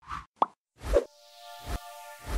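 Animated logo sting: three short pops in quick succession, then a rising shimmer with held chime-like tones, punctuated by two brief soft thumps.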